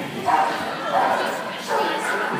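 A dog barking, about three short barks spaced a little under a second apart.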